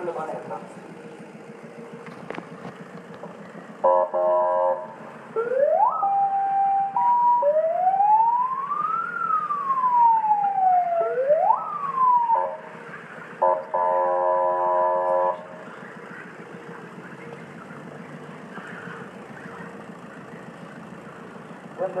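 Police vehicle siren: a short steady horn blast, then the siren tone sweeping up and down irregularly for about seven seconds, then a longer horn blast, over a steady background noise.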